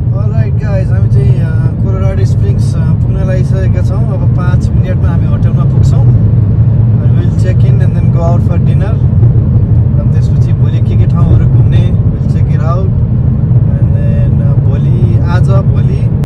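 Car driving along, heard from inside the cabin: a loud, steady low rumble of engine and road noise, with a man's voice talking or singing over it.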